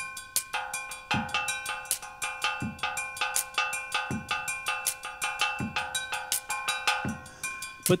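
A small souvenir steel pan, made from the bottom of a can, struck with a stick in a steady rhythm of about four or five strokes a second. Each stroke rings on the same few metallic pitches. A low drum beat from a drum kit comes about every second and a half.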